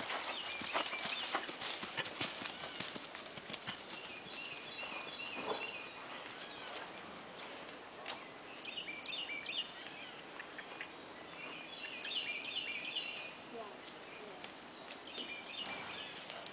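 Hoofbeats of a chestnut Thoroughbred mare on grass: a quick run of hoof strikes as she passes close at the start, then fainter, scattered hoofbeats as she moves away.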